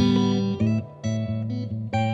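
Fender Custom Shop Stratocaster electric guitar played through a Supro 1675RT tube amp, picking a run of single notes. A hard-picked note opens it, the playing drops back briefly about a second in, and another strong attack comes just before the end.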